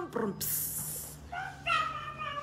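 A short hiss of sanitizer spray lasting under a second, followed by a drawn-out vocal sound that slides down in pitch.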